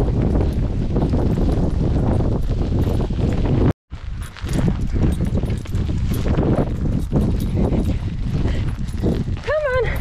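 Running footfalls on a wet tarmac lane under heavy wind noise on the microphone, with a steady running rhythm. The sound cuts out for an instant about four seconds in. Near the end there is a short, high voiced sound that rises and falls.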